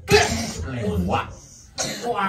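A man's voice through a hand-held microphone making cough-like, throat-clearing vocal noises rather than words: a harsh burst at the start, a drawn-out voiced sound rising in pitch, and another sharp burst near the end.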